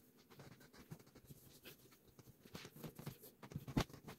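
Faint rustling and scratching of a fabric sofa cover being handled, with many small clicks and one sharper tick near the end.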